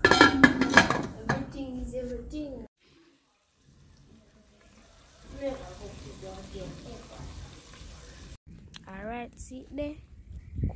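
Metal pot lid clanking against an aluminium cooking pot in a quick run of knocks in the first second, followed by people talking.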